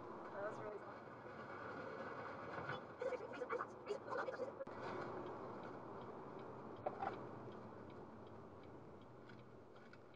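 Steady road and engine noise heard from inside a car cabin at highway speed, fairly quiet, with a few faint snatches of talking.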